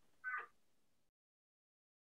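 One brief, faint, high-pitched vocal sound, like a short cry, lasting about a quarter of a second shortly after the start; the rest is near silence.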